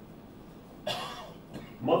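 A single short cough about a second in.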